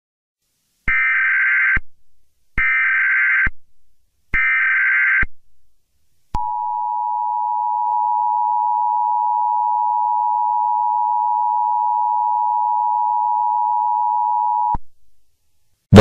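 Emergency Alert System (EAS) alert opening: three short bursts of digital data tones (the SAME header) about a second apart, then the steady dual-tone EAS attention signal held for about eight seconds before cutting off suddenly.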